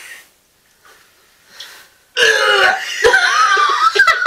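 A near-silent start, then about two seconds in a man's loud, drawn-out throaty belching groan as he reacts to a spoonful of baby food.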